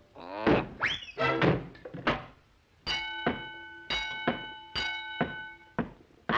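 Cartoon crash sound effects: a few heavy thuds with a rising whistle in the first two seconds. After a short pause a bell rings out six or seven times in quick strokes, as a high-striker bell would when struck.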